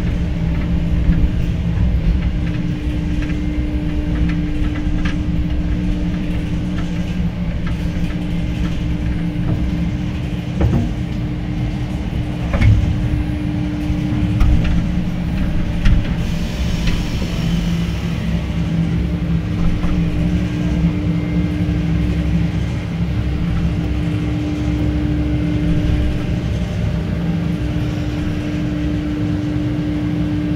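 Cable car running: a steady low rumble and hum, the hum tone dropping out and returning every few seconds, with scattered clicks and knocks.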